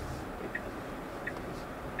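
Quiet, steady cabin noise of a Tesla electric car rolling slowly over a snow-covered street, mostly low tyre and road rumble, with two faint ticks.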